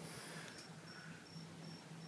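Faint cricket chirping: a short high-pitched pulse repeating about three times a second, starting about half a second in, over a low hiss.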